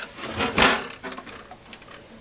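The metal case of a Keithley 228A voltage/current source being tipped onto its side and slid on the workbench: one scraping rub, strongest about half a second in, then quieter handling noise.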